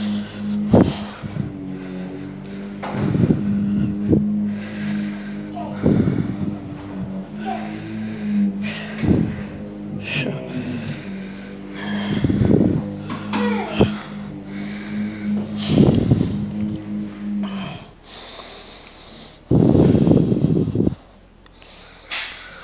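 A man's forceful breaths in time with seated dumbbell hammer curl reps, one every two to three seconds, with a longer, louder exhale near the end, over a steady low hum that stops a few seconds before the end.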